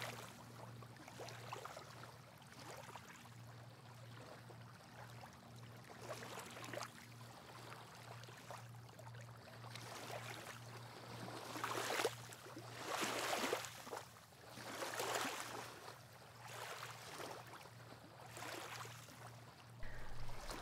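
Small sea waves lapping gently on a sandy, stony shore: soft, faint swells of rushing water, with a few louder washes in the second half.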